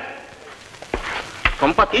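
Hiss and crackle of an old film soundtrack in a short pause between lines of dialogue, with a few sharp clicks about a second in. A man's voice starts again near the end.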